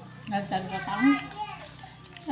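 A person's voice talking briefly, over a low steady hum.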